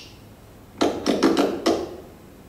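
A quick run of about six sharp flamenco percussion strikes, starting a little under halfway in and lasting about a second.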